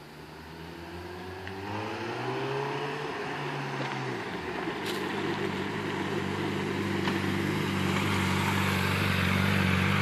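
Honda CBR600RR's inline-four engine approaching: it rises in pitch as the throttle opens, drops off about four seconds in, then runs at a steady low note that grows louder as the bike pulls up close.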